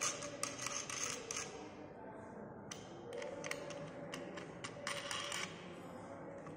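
Small clicks and scraping from hand-tightening the bolt that clamps a Teflon sample between the plates of a parallel-plate capacitor sample holder. The clicks come in two spells, one at the start and another from about three seconds in.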